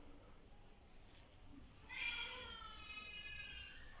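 A newborn baby girl gives a faint, high-pitched squeal or whimper about halfway through, held for about two seconds.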